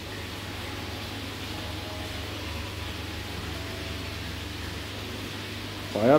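Aquarium aeration running: a steady hiss of rising air bubbles over a constant low hum from the tank's pump.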